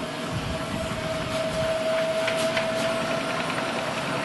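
Series-wound DC motor running the chipper shredder's rotor with no load, powered from a car battery charger: a steady whine over a light mechanical rattle. It is drawing over 10 amps, too little power to chip or shred.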